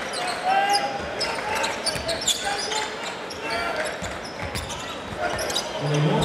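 Basketball court sound during play: a ball being dribbled on the hardwood floor and short high squeaks of shoes, over the steady murmur and calls of an arena crowd.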